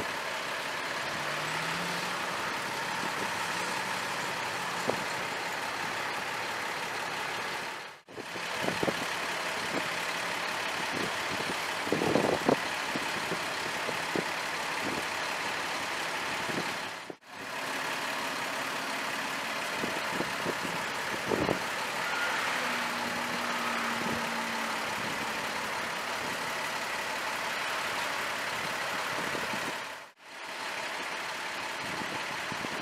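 Fire engine idling steadily amid street traffic noise, with a few short knocks about twelve seconds in. The sound drops out briefly twice.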